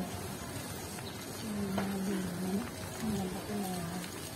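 A man's voice making long held hums without clear words, one stretch about halfway through and a shorter one near the end.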